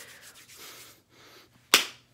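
A single sharp slap of a hand on skin, coming near the end after faint rustling.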